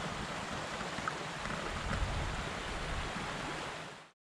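Steady outdoor rushing noise with an uneven low rumble, fading out near the end.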